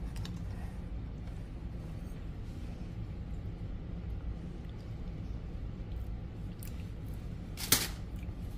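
Low, steady background rumble with no distinct event, then a single sharp click near the end.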